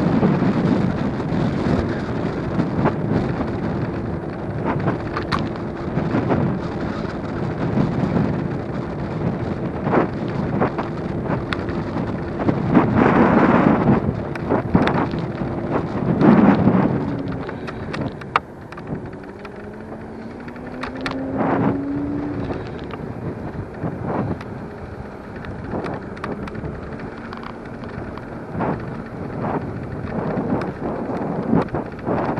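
Wind buffeting the microphone over the running noise of a Superpedestrian electric scooter on tarmac, with frequent short rattles and knocks as it rides over small bumps. A steady whine runs through the first half, fades as the scooter slows at a junction, then rises in pitch again as it picks up speed.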